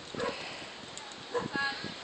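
A toddler's short high-pitched babbling sounds: a brief one near the start and a longer, wavering one a little past the middle.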